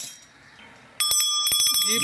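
A small metal bell rung several times in quick succession starting about a second in, its high ringing tones held on after the strikes. A sharp click comes at the very start.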